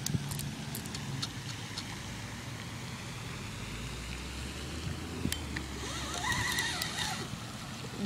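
Outdoor ambience: a low steady rumble under a soft hiss, with a few light clicks, one about five seconds in.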